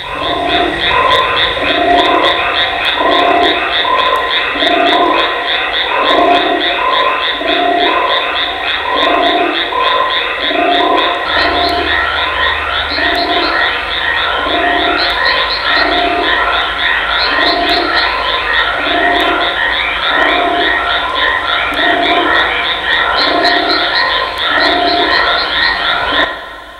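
A loud, dense chorus of croaking trills with a steady pulse about once a second, like a frog chorus. It starts and stops abruptly, and a second, deeper layer joins about eleven seconds in.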